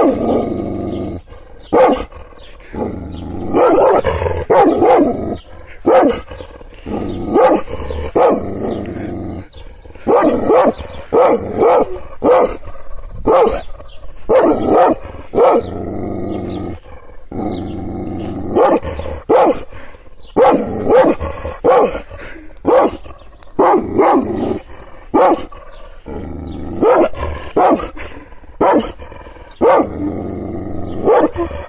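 Kangal shepherd dog barking angrily: deep barks repeated in quick runs of several at a time with short pauses between, continuing throughout.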